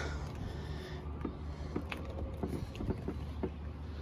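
Thule EasyFold XT 2 hitch bike rack, loaded with two e-bikes, unlatched and tilted down: a few faint, scattered clicks and knocks from its latch and pivot, over a steady low hum.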